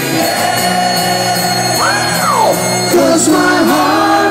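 Live rock music with bagpipes, their drones held steady under the band, and a vocal wail that rises and falls about two seconds in.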